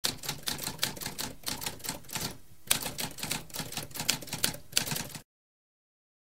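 Typewriter typing: a rapid run of keystrokes with a brief pause about halfway through, stopping abruptly a little after five seconds in.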